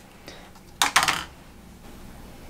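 A short cluster of light clicks and rustle a little under a second in, from a jar of hair cream being handled as a dollop is scooped out with the fingers.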